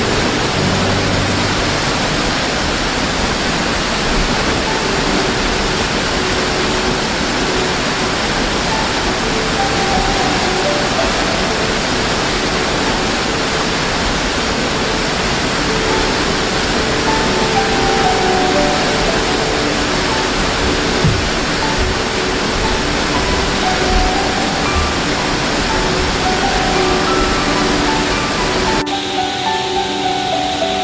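Steady rushing of a waterfall, mixed with soft, slow background music of held notes. Shortly before the end the rushing turns softer and less hissy.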